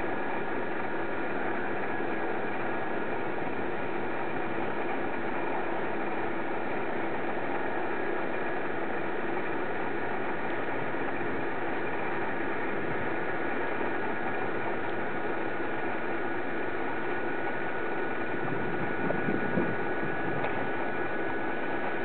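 A steady whirring hum over an even hiss, like a small motor or fan running without change, with a few faint knocks near the end.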